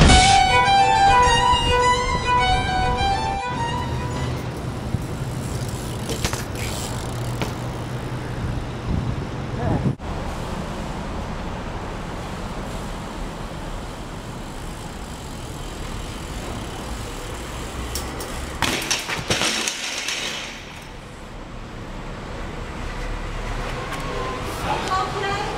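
Electronic music ends in the first few seconds, giving way to a steady echoing hum of a concrete parking garage with scattered knocks. About three quarters of the way through there is a louder clatter, a BMX bike and rider hitting the concrete in a fall.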